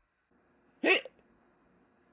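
A man's voice giving one short, sharp 'hic!', an imitated hiccup, about a second in, jumping quickly upward in pitch.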